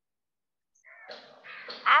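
Dead silence on the video-call line, then, about a second in, faint harsh sound that builds into a loud, rough, voice-like onset as a girl begins to answer near the end.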